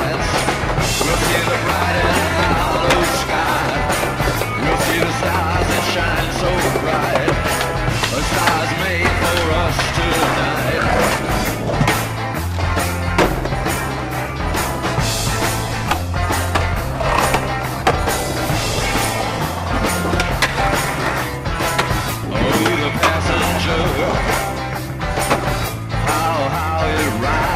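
Music with a repeating bass line playing throughout, mixed with skateboard sounds: wheels rolling and boards knocking on tricks.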